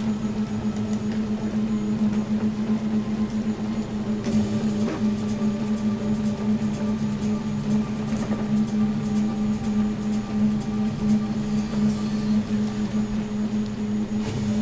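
3D printer running: a steady motor hum with fainter higher tones that come in and shift now and then as it moves.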